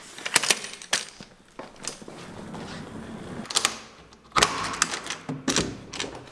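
Irregular sharp plastic clicks and clacks of a soft suitcase being handled, its telescoping handle mechanism clicking, with the loudest clatter about four and a half seconds in.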